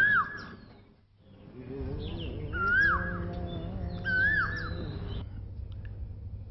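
Bird calls: a rising-then-falling chirp heard three times, at the start, near the middle and about four seconds in, with fainter higher chirps, over a soft sustained musical tone that comes in after a short silent gap and fades just after five seconds.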